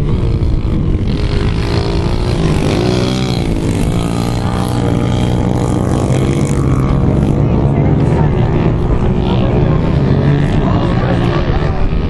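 Pit bike engines racing, their pitch rising and falling over and over as the riders work the throttle, several engines overlapping.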